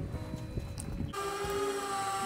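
Low rumble of open-air boat ambience with a few light knocks, which cuts off abruptly about a second in and gives way to soft background music of steady held notes.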